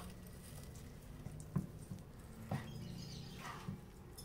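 Quiet room with a low, steady hum and two soft knocks on a wooden cutting board, about a second and a half in and again a second later.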